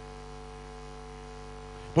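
Steady electrical mains hum, a constant low buzz made of several steady tones with a faint hiss over it.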